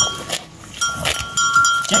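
Metal neck bells on grazing cattle clinking irregularly as the cows move their heads. There are a few strikes, most of them in the second half, each with a short bright ring.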